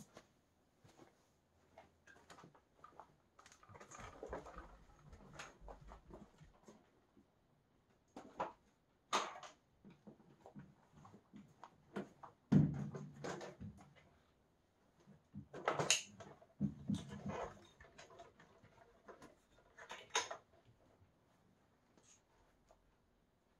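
Scattered clicks, knocks and a few heavier thumps of upright vacuum cleaners being handled, wheeled off and set down on a carpeted floor, with footsteps; no vacuum motor is running.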